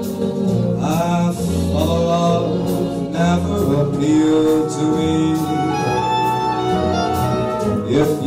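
A male vocalist croons into a microphone over instrumental accompaniment. The voice holds and slides between sustained notes, and light percussion ticks keep a regular beat.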